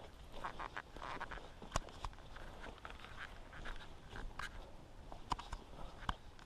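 Footsteps walking over a forest floor of leaf litter and conifer needles: quiet, irregular crunches and clicks.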